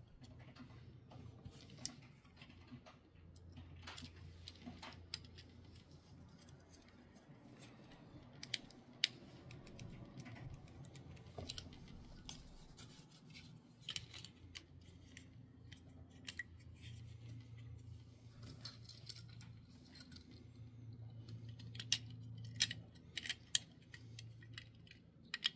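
Small plastic and metal parts of a Kaido House Datsun 510 wagon die-cast model car clicking and tapping as hands take it apart and handle its interior tub and wheeled base. The clicks are scattered, with a quick run of louder ones near the end, over a faint low hum.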